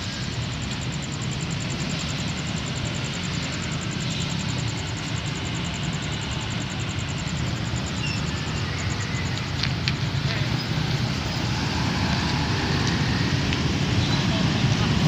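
Road traffic of motorcycles and cars driving over a railway level crossing: a steady mix of small engines and tyre noise, growing a little louder near the end.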